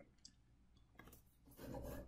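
Near silence with a few faint clicks, then a faint, brief rubbing sound in the last half second: a computer mouse being slid across a desk.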